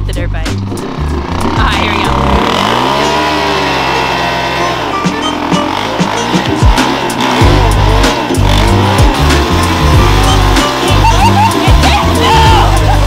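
Music with a heavy, repeating bass beat; the beat drops away for a few seconds in the middle while a dirt bike converted to a three-wheeler revs up and down in pitch, spinning its back wheel on the ice. The beat returns about two thirds of the way through.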